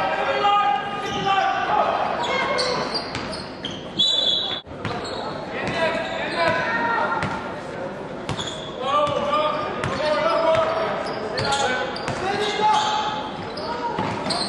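Basketball game in an indoor hall: players' voices calling out across the court over a ball bouncing on the hardwood.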